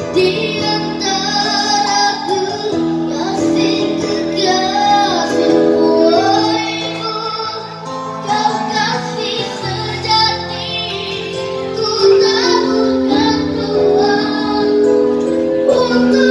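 A boy singing a ballad into a microphone with long held notes, accompanied by sustained chords on a digital keyboard.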